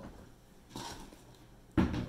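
Mostly quiet room tone, then a single sharp knock near the end.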